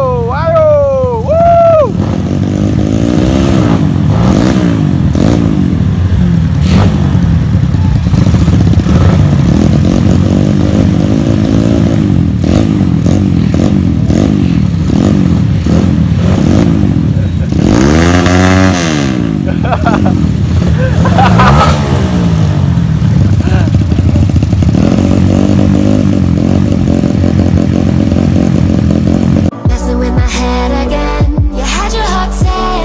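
Honda CB motorcycle engines revving loudly in repeated throttle blips, rising and falling about once a second, with one longer rev about eighteen seconds in.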